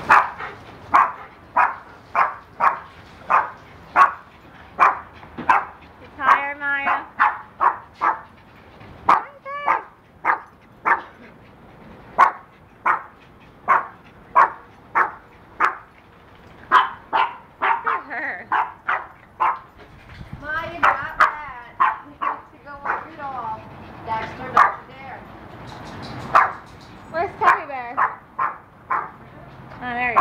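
Dogs barking: a steady run of short, sharp barks, one or two a second, mixed with high, wavering whines and yips that grow more frequent in the second half.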